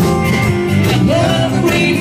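Live country band music: a male voice singing a held, bending note over strummed acoustic guitar, electric guitar and a steady beat.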